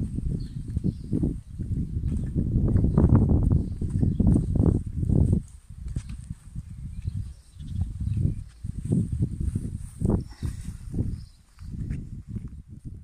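Footsteps on grass and gravel by someone walking with a handheld camera. A heavy low rumble covers the first half, then the steps come through as separate thuds about twice a second.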